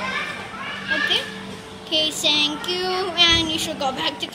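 Children's voices: high-pitched chatter and vocalising, with a steady low hum underneath.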